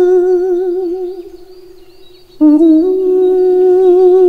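A man's wordless vocal tone, sung as a long held note with a wavering, theremin-like vibrato. It fades away after about a second, and a little past halfway a new held note starts sharply and stays nearly level in pitch.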